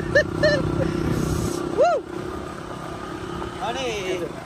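Motorcycle engine running at riding speed with road and wind noise, its steady hum dropping away sharply about halfway through as it eases off.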